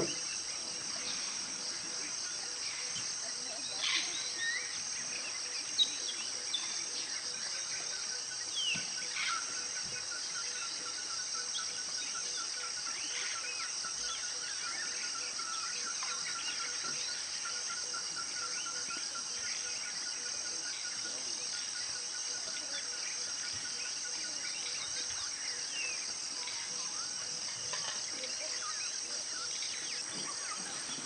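Tropical forest ambience: a steady high-pitched chorus of insects, with a few short bird calls in the first ten seconds and a long rapid pulsing trill from about eight to twenty seconds in.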